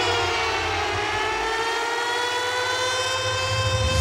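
A sustained, siren-like electronic tone rich in overtones, gliding slowly down and then back up in pitch over a low throbbing bass: the build-up intro of a pop song.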